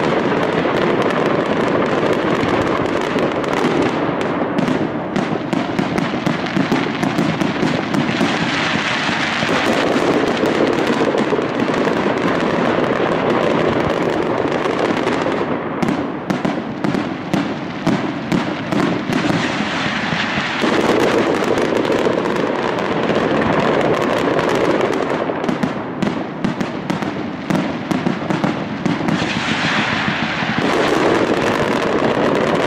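Aerial mascletà fireworks by Pirotecnia Valenciana: a dense, unbroken barrage of firecracker bangs and crackle bursting overhead in daylight. It swells into brighter crackling about eight seconds in and again near the end.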